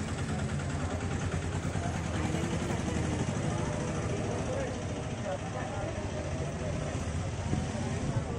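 A steady low engine rumble runs throughout, with people in a crowd talking over it.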